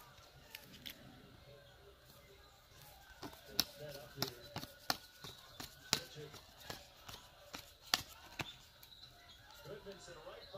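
Hard plastic trading-card holders clicking and tapping against each other as a stack of cased cards is sorted by hand: a run of sharp, irregular clicks, most of them from about three seconds in.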